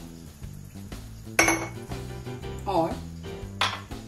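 An empty glass tumbler set down hard with a clinking knock about a second and a half in, followed by a second, lighter knock near the end.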